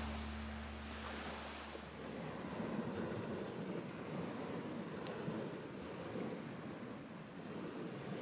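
Small waves washing steadily on a lakeshore, a soft even wash, as the last of the music fades out in the first second or two.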